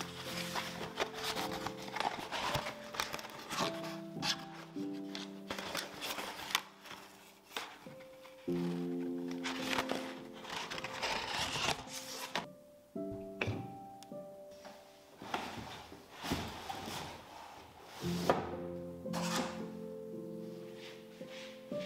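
Instrumental background music with held chords, over the rustle and tearing of corrugated cardboard wrap and tape being cut and pulled off a bike frame, with a few thunks.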